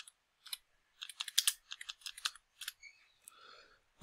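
Typing on a computer keyboard: quiet keystrokes, a couple of single ones and then a quick run of about a dozen starting about a second in, as a search term is typed.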